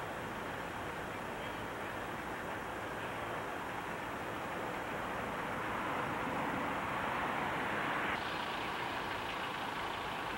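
Steady outdoor background noise, an even hiss-like haze. It grows louder over the first eight seconds and drops suddenly just after eight seconds in.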